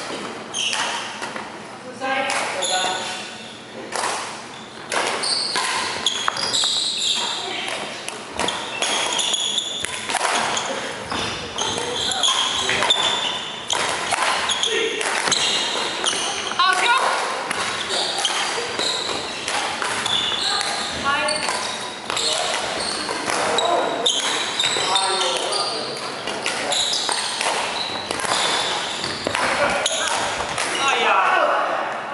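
Badminton rally in a large echoing hall: repeated sharp racket strikes on the shuttlecock and players' footsteps on the wooden court, with people talking in the background.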